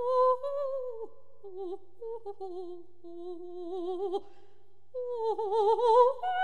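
Solo soprano voice singing an anonymous 18th-century Venetian song in a slow, soft line of long held notes, each shaken by a wide, fast vibrato-like trill. A louder phrase begins about five seconds in.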